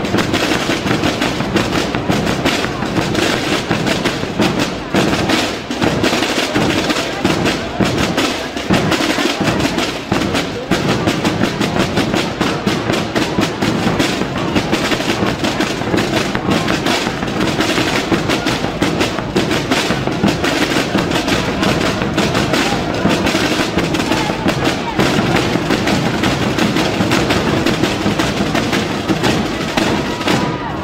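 A group of tambores and bombos, the snare drums and large bass drums of Aragonese Holy Week drumming, playing together in a dense, continuous rhythm.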